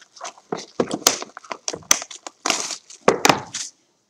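Hands opening a cardboard trading-card hobby box: irregular crackling, tearing and rustling of the box and its packaging, in short separate bursts.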